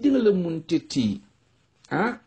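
Speech only: a man talking, with a pause of about half a second a little past the middle.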